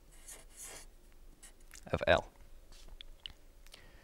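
Felt-tip marker making short strokes on flipchart paper: faint scratching and a few light ticks. A man's voice says "of L" about two seconds in.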